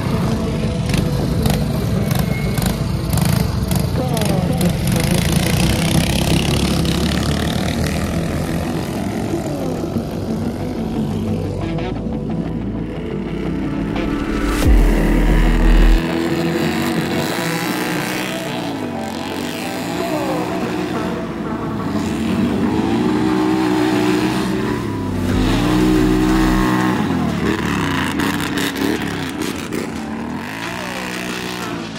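Small engines of a racing garden tractor and mini bikes running hard on a dirt track, a dense steady drone. After about twelve seconds the sound changes to ATV engines revving up and down again and again, with two short deep rumbles.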